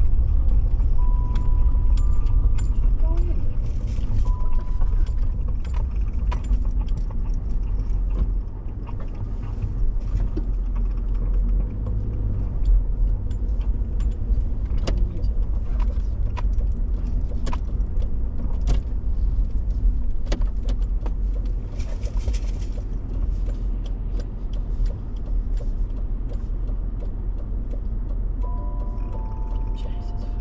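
Car driving on a wet road, heard from inside the cabin: a steady low rumble of tyres and engine, with scattered small clicks and rattles.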